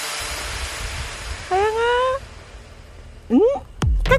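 A cat giving two short rising meows, one about a second and a half in and another shortly before the end, over a steady hiss that stops about two seconds in.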